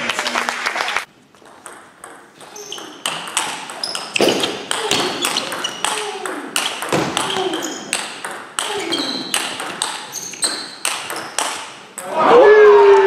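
Table tennis rally: a celluloid-type ball clicking off rubber-covered paddles and the table, many quick hits at uneven spacing, with a brief lull about a second in.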